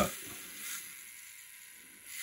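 Small plastic-geared hobby DC motor turning its wheel, a faint whirring that fades steadily as the light sensor is covered and the motor slows.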